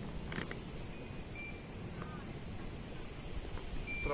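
Quiet outdoor background with a steady low rumble, a brief rustle of handling about half a second in, and a couple of faint high chirps.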